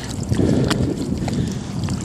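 Wind buffeting a phone's microphone outdoors, a steady low rumbling rush, with a few light clicks.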